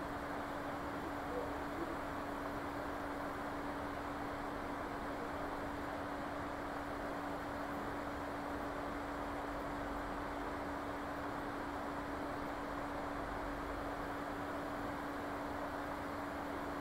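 Steady background noise: an even hiss with a constant low hum, unchanging throughout and with no distinct events.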